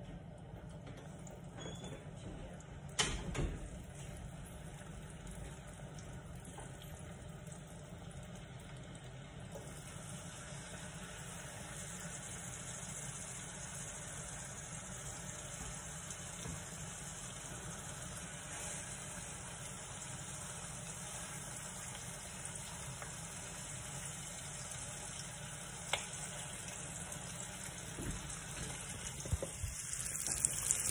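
Seasoned chicken wings sizzling in hot oil in a frying pan as they are laid in. The sizzle turns louder and brighter about ten seconds in. A sharp knock comes about three seconds in.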